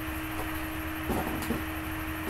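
Steady low room hum, like a fan or mains hum, with a few faint rustles and small knocks from a person moving about, about a second in and again a little later.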